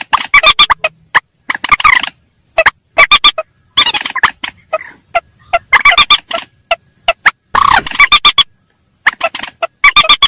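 Lure recording of rails (burung mandar), adults and chicks calling. Loud rapid runs of short, sharp notes come in bursts, with brief pauses between them.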